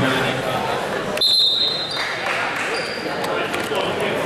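Crowd chatter echoing in a school gym, with a short, shrill referee's whistle blast a little over a second in.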